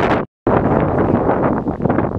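Wind buffeting the camera's microphone, a loud, uneven rush, broken by a brief dead-silent gap about a third of a second in before it resumes.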